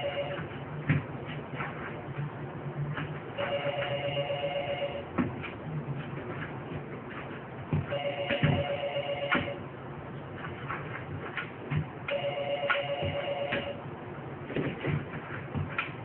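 Telephone ringing: a warbling electronic ring of about a second and a half, repeating roughly every four and a half seconds, with several knocks in the gaps between rings.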